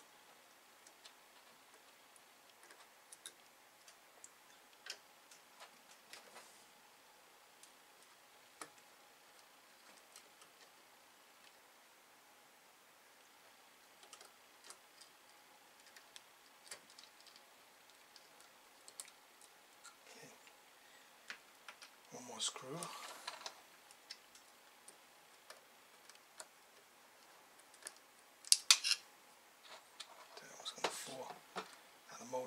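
Scattered light clicks and ticks of a screwdriver and small metal parts as screws are backed out of an Atari 1050 floppy disk drive to free its spindle motor. There is a brief louder scuffle of handling about 22 seconds in and a sharp clatter of metal parts near the end.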